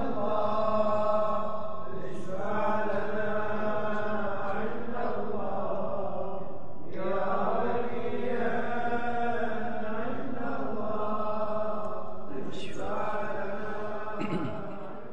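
Melodic vocal chant sung in long held phrases, with breaks about two, seven and twelve and a half seconds in.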